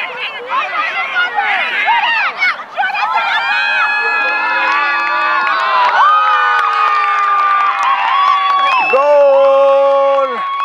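Sideline spectators shouting and cheering as a goal is scored, swelling into long held cheers and yells. One voice holds a long shout near the end.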